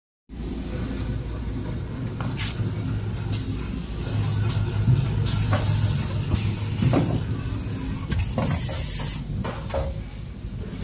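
XY GU 27B double-head napkin bag packing machine running: a steady low mechanical hum with scattered clacks and short hisses, and a loud hiss lasting about a second near the end.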